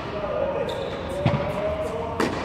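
Tennis balls being struck with a racket and bouncing on an indoor hard court, each knock echoing in a large tennis hall; the loudest knock comes a little past halfway.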